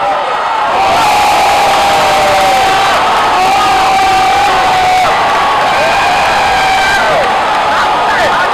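Cheering and shouting voices celebrating a goal, swelling about a second in, with several long held shouts over the noise.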